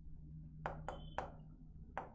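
Light taps and clicks of a stylus striking the glass surface of an interactive display while words are written, three close together about a second in and one more near the end, over a faint low hum.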